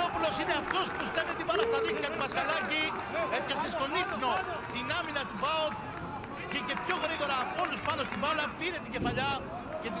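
Several men shouting and calling to one another across a football pitch, their voices overlapping, with no crowd noise behind them.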